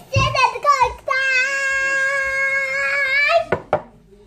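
A child's voice: a few quick syllables, then one long high note held for about two seconds that lifts slightly at the end, followed by two short clicks.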